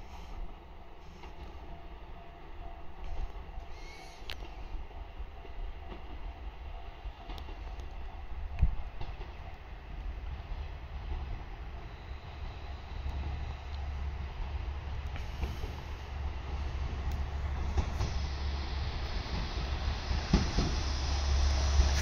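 Diesel local train approaching the station, its rumble growing steadily louder as it nears. A single sharp knock is heard about a third of the way in.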